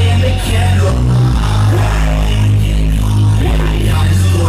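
Loud live hip-hop music over a club PA, recorded on a phone: a heavy, distorted bassline of long low notes that shift pitch every second or so, with a rapper's vocal over the track.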